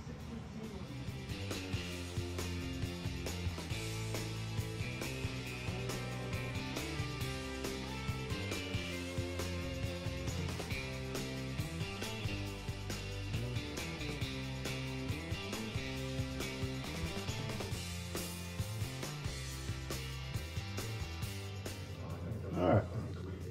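Background music with a steady beat and a moving bass line.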